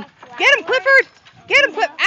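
A dog giving two quick runs of high-pitched, excited yelping barks.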